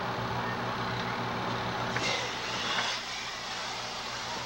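A truck engine running steadily with an even low hum, and a brief hiss about two seconds in that lasts about a second.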